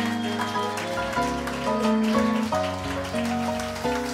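A piano, upright bass and drums trio playing instrumental music, with a steady high hiss of cymbals over it.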